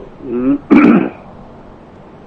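A man clears his throat once: a short voiced sound, then one harsh burst just under a second in.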